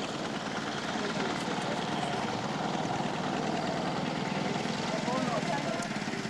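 Indistinct voices over a steady, rapidly pulsing motor noise.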